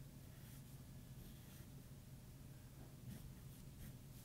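Faint pencil strokes scratching on paper: several short, light strokes over a low steady hum.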